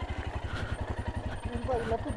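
Single-cylinder adventure motorcycle idling with a steady, even pulse. A faint voice comes in near the end.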